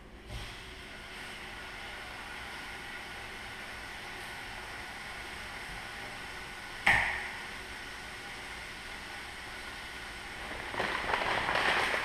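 Kitchen range hood fan running with a steady whirring hiss, starting just after a light knock as it is switched on. About seven seconds in, a single sharp clank rings briefly.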